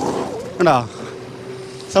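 Rear tyre of an Ather Rizta electric scooter spinning and scrabbling on loose gravel, throwing stones, in the first half-second: the wheel is losing grip on the slope with skid control switched off. A faint steady whine follows.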